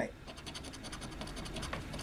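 A coin-like scratching token scraping the coating off a lottery scratch-off ticket in quick, rapid back-and-forth strokes, faint and steady.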